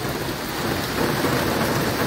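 Heavy rain falling steadily on a flooded street, a continuous hiss.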